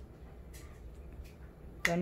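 A metal spoon stirring sauce in a glass jar: a few light clinks of spoon against glass, the sharpest one near the end.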